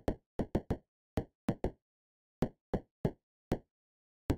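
Synthesized percussive knocks from a Max/MSP patch: random noise, sampled and held on a 6.4 Hz clock and thresholded, fires short decaying envelopes on a random-noise source. About eleven sharp knocks come at uneven intervals, bunched in the first second and a half, with a gap in the middle.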